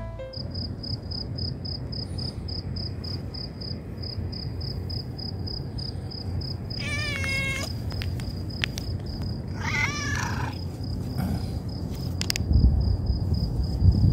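Stray cat meowing twice, about seven and ten seconds in, over a cricket chirping in a steady high pulse three or four times a second. Low thumps near the end.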